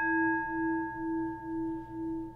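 A struck singing bowl rings out with one long, sustained tone. Its loudness wavers in a slow pulse about twice a second as it fades.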